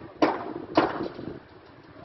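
A run of sharp knocks, about two a second, that stops about a second in.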